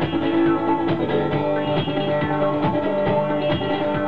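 Instrumental break of live music: an acoustic guitar played over a steady drum and hi-hat beat.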